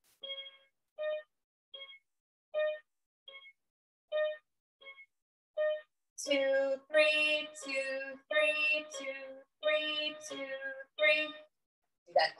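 Toy electronic keyboard playing two neighbouring black keys in turn, short single notes about one every 0.7 seconds. About halfway through, a woman's singing voice comes in louder over the same alternating two-note pattern.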